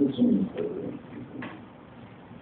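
A brief, low vocal sound from a man close to the microphone, about a second long, fading into a steady low hubbub of the room.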